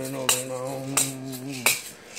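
A man chanting, holding one long low note that stops about 1.7 seconds in, over a percussion click beating about three times a second.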